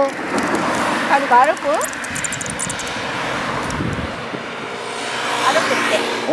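Cars passing on the road close by: tyre and engine noise swells and fades, and a second vehicle approaches near the end.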